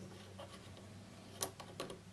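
Faint clicks and light scraping as fingers turn and lift the front retaining ring off a Soviet I50U-1 enlarging lens, with the sharpest click about a second and a half in and another just before the end.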